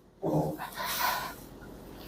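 A person's brief wordless vocal sound about a quarter second in, then faint, indistinct voices.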